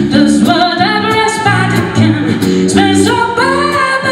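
A woman singing a blues number into a microphone, backed by a live band: repeated low bass notes under her melody and drum and cymbal strokes about twice a second.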